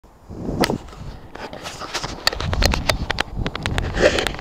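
Handling noise from a small camera being gripped and adjusted close to its microphone: rustling with a quick run of sharp clicks and taps, thickest in the second half.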